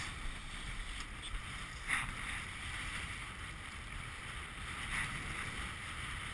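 Wind rumbling on the microphone over choppy water lapping and splashing against a boat hull, with a short sharp splash or knock about two seconds in.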